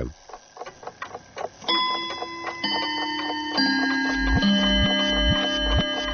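Intro music for a radio programme: a clock-like ticking, then held synthesizer notes come in one after another from about two seconds in. A low pulsing bass beat, about two a second, joins about four seconds in.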